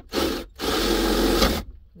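Power drill boring into a wooden countertop: a short burst, then about a second of steady drilling that stops abruptly.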